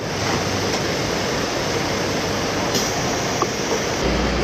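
Steady, even rush of outdoor background noise from the footage's own sound, with no distinct events in it.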